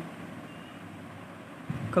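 Steady background noise: an even, low hiss with no speech.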